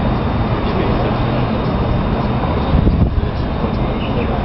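Steady outdoor city noise: a low traffic rumble from the roads and bridge below, mixed with the indistinct voices of people nearby, swelling briefly about three seconds in.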